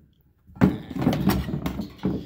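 Hard plastic marine battery box with a transmission cooler inside being handled. About half a second in there is a sudden knock, then a second and a half of plastic scraping and clattering.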